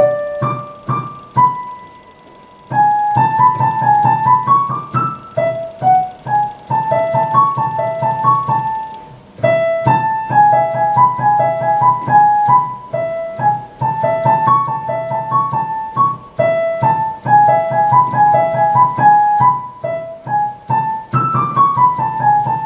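Roland digital piano played with the right hand alone: a single line of separate notes, moving up and down mostly by step in short runs, with a brief pause about two seconds in.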